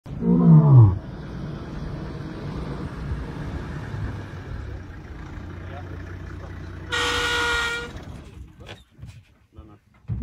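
Male lion roaring: one deep call falling in pitch right at the start. A vehicle engine then idles steadily, and a brief horn-like toot sounds about seven seconds in.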